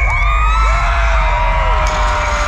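Crowd screaming and whooping, with several long held screams overlapping and falling away, over music and a steady low rumble.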